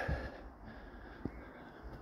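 A short breath just after speech, then quiet outdoor background with one faint click just past the middle.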